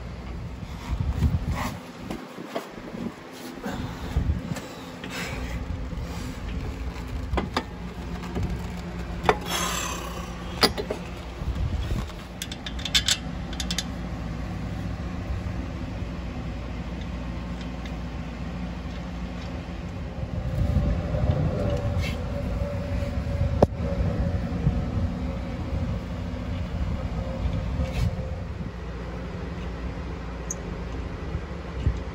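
Scattered clicks, clinks and knocks of hand tools and metal parts as a Jeep Cherokee's front shock absorber is fitted to its mounts, over a steady low hum.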